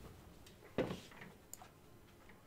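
Faint computer mouse clicks as a window is dragged wider: a soft knock just under a second in, then a sharp short click about half a second later.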